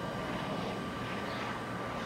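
Bombardier Global 6000 business jet's twin turbofan engines passing low overhead on final approach, a steady jet noise with a faint steady whine.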